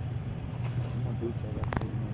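Toyota FJ Cruiser's V6 engine running low and steady as the truck crawls over rocks, with one sharp knock near the end.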